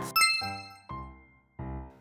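A bright chime-like ding that rings and fades within about half a second, followed by two soft, steady musical notes.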